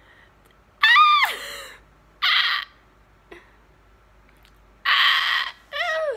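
A woman's wordless vocal noise: a high, wavering squeal about a second in, then two breathy, hissing shrieks, the second followed by a short falling whine near the end. It is meant to express excitement and anxiousness at once.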